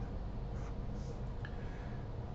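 Felt-tip marker writing on paper: a few short, faint strokes.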